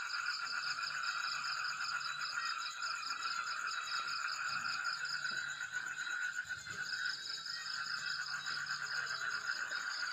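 Night chorus of calling frogs and insects: steady, rapid trilling at several pitches at once, with no break.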